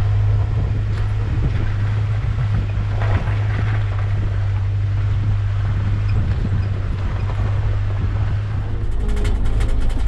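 Jeep Wrangler driving on a dirt track, its engine and tyres making a steady low drone. Music comes in near the end.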